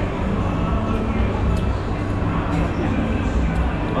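Busy indoor restaurant ambience: background voices and a steady low hum, with no single sound standing out.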